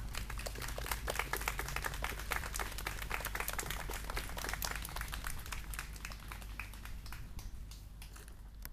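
A small crowd applauding, many hands clapping unevenly, thinning and fading gradually toward the end.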